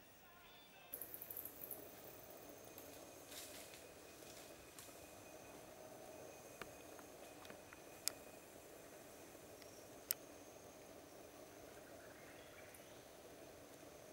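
Background music ends about a second in, giving way to faint tropical-forest ambience: a steady high-pitched insect drone over a low hiss, with a couple of sharp clicks.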